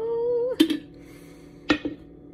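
A woman's drawn-out "ohh", rising slowly in pitch, cut off about half a second in by a sharp glass knock. A second knock comes about a second later, as the glass coffee carafe is handled and set down after pouring.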